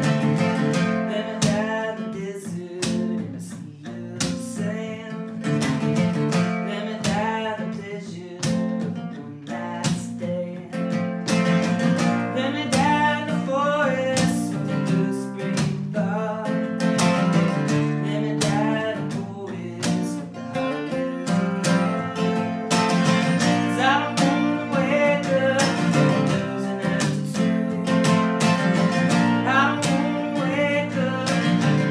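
Steel-string acoustic guitar strummed steadily in a live folk song, with picked melody notes among the chords.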